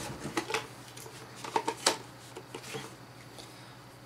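Hard plastic parts of a toy capsule clicking and tapping as they are handled and fitted together, in scattered small knocks with the sharpest just under two seconds in.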